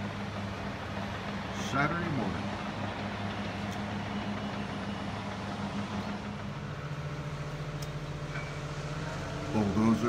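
Diesel engines of heavy earthmoving equipment running in the distance, a steady hum that drops a little in pitch about six and a half seconds in.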